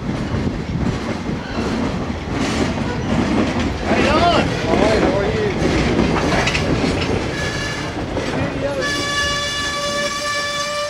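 A caboose and gondola cars of a slow freight train rolling past close by, wheels clicking over the rail joints. Wavering wheel squeals come about halfway through, and a long, steady, high squeal starts near the end.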